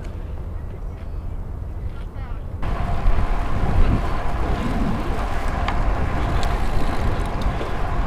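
Wind rushing over a helmet-mounted action camera's microphone while riding a bicycle, a steady low rumble with hiss. About two and a half seconds in it turns abruptly louder and hissier.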